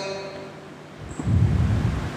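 The echo of a chanted Quran recitation dies away, then about a second in a low rumble of breath hits the close headset microphone.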